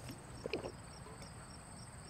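Crickets chirping in a steady, high, rapidly pulsing trill of night ambience. A brief faint knock or rustle comes about half a second in.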